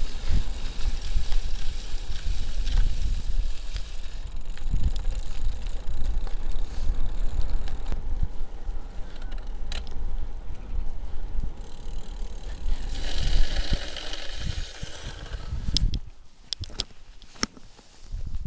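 Road bike rolling along a country road, with wind buffeting the camera microphone and tyre noise. A brighter hiss comes up for a couple of seconds after the middle. Near the end the noise drops off as the bike stops, leaving a few clicks and knocks.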